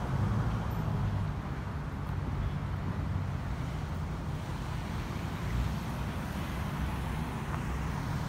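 Steady road-traffic noise, an even low hum of cars with no distinct events standing out.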